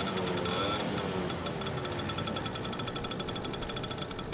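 Small engine of a parked CNG-powered auto-rickshaw idling with a rapid, even ticking rattle.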